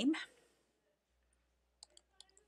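Computer keyboard keystrokes: a couple of sharp clicks near the end as a name is typed into a text field.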